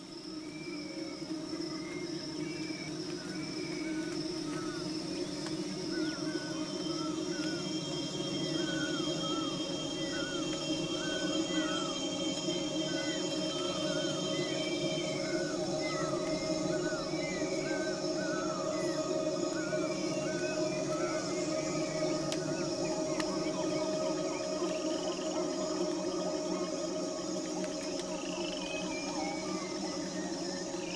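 Tropical forest ambience that fades in over the first few seconds: a steady high insect drone and many short chirping animal calls over a low sustained hum.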